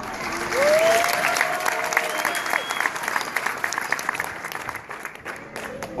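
A crowd applauding, the clapping swelling about a second in and thinning out toward the end. Over the first few seconds one voice calls out, holding a single note for about two seconds.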